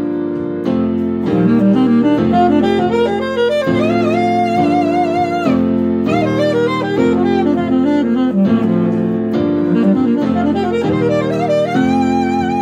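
Alto saxophone playing the first pentatonic scale pattern in G at a fast tempo: quick runs of notes, with some longer notes held with vibrato. It is played over a backing track of sustained chords that change every second or so.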